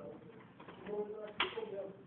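A person's voice in short, low pitched phrases, with a sharp click about one and a half seconds in.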